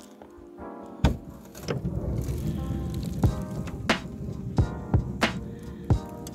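A van door latch clunks open about a second in, then footsteps crunch over snowy, frozen ground at a steady walking pace. Background music plays underneath.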